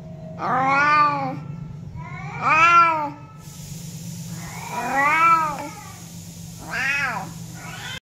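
A domestic cat meowing four times, about two seconds apart, each meow rising and then falling in pitch.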